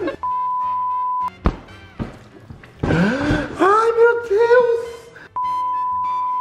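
A steady single-pitch beep tone, each about a second long, sounded twice: just after the start and again near the end, the second coinciding with a colour-bar test card. Between the beeps are two short clicks and a voice-like passage with gliding pitch.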